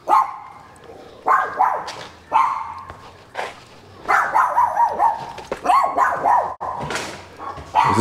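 A dog barking repeatedly, in short separate barks spaced through the whole stretch.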